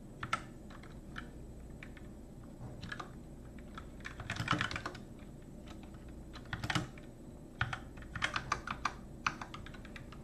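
Computer keyboard typing in short bursts: scattered key presses, a quick run of keystrokes about four seconds in, and a string of separate key presses near the end.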